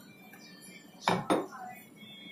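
Two quick clattering knocks about a fifth of a second apart: a kitchen utensil, such as the chef's knife, striking the hard cutting board or steel counter.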